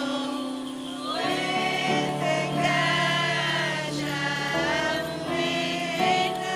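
Church choir singing a slow liturgical hymn in long held notes that step from pitch to pitch, over a steady keyboard accompaniment.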